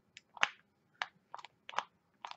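Plastic push-down pump top of an E.L.F. Hydrating Bubble Mask jar clicking as it is pressed repeatedly, about six short clicks, while the pump has not yet primed and no gel comes out.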